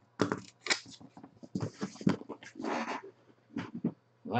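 Cardboard trading-card boxes being handled and moved: a string of knocks and clicks with short scraping rustles, and one longer scrape about three seconds in.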